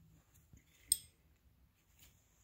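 A single sharp metallic clink about a second in, with a brief high ring, as metal hardware on a climbing harness knocks together while the rope bridge is handled. A fainter knock comes just before it.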